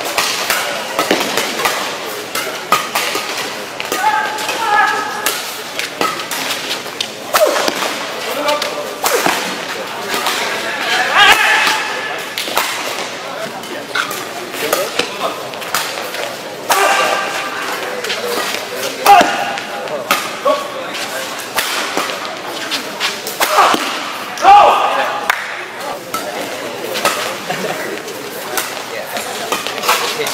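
Doubles badminton rally: repeated sharp cracks of rackets striking the shuttlecock, the hardest smashes like a pistol shot, with voices between the strokes. Two strikes in the second half stand out as the loudest.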